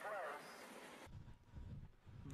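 A voice trailing off at the very start, then near silence with only a faint low rumble in the second half.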